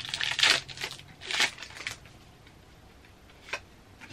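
Foil Pokémon booster pack wrapper crinkling and tearing in the hands, in a few bursts over the first two seconds, then a single light click near the end.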